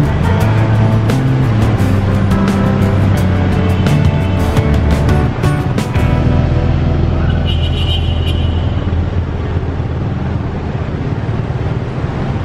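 Background music with a beat for about the first six seconds, then it cuts off suddenly. What is left is a steady low rumble of engine and traffic noise from a moving motorbike taxi in city traffic.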